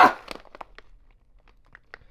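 Plastic food packaging crinkling, with a few faint light clicks, as packaged foods are handled in a stocked cupboard.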